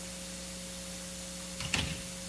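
Room tone in a pause: a steady low hum with faint hiss, and a man's voice starting up near the end.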